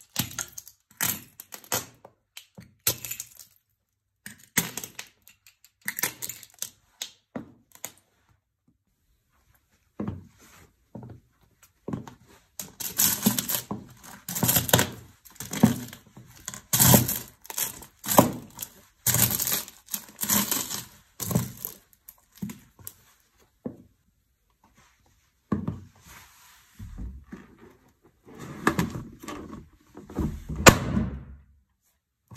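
Stiletto-heeled shoes crushing food on a tiled floor. First come sharp separate cracks of small brittle white pieces snapping underfoot, then a short pause, then about twelve seconds of dense crunching of caramel popcorn. Near the end come duller, lower rubbing sounds as a rubber balloon is pressed under the shoe.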